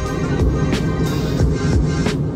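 Electronic background music with a steady beat.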